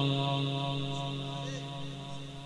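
The last held note of a Quran recitation, steady in pitch, dying away in the echo of the sound system and fading steadily.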